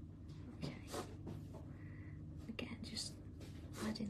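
Fine-tipped pen scratching on paper in several short strokes as small shapes are drawn in, over a low steady hum.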